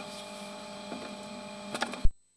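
Steady electrical hum and hiss from a sewer inspection camera rig while the camera is pushed down the line, with a few sharp clicks near the end.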